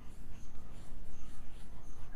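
Chalk scratching on a blackboard as a word is written, in a run of short repeated strokes.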